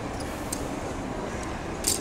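Plastic action-figure parts clicking faintly, then a short sharp snap near the end as the Megatron figure's arm pops off its joint, over a steady background hiss.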